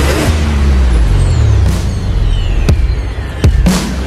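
Sound effects for an animated logo intro: falling whooshing sweeps over a deep rumble, with two sharp hits about two and a half and three and a half seconds in, and a burst of noise just before the end.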